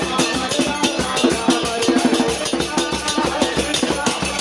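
Kirtan music: voices singing over drumming and a fast, steady jingle of hand-held percussion.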